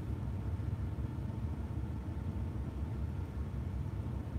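Steady low rumble of a car's cabin background noise, with no distinct tone or sudden sound.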